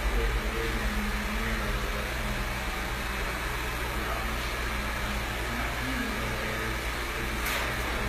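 Steady low mechanical hum of room machinery, with faint voices in the background.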